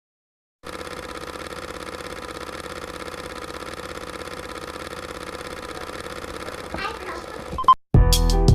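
Film projector running with a rapid, even clatter, starting about half a second in. Near the end a brief voice and a short beep are heard before it cuts off.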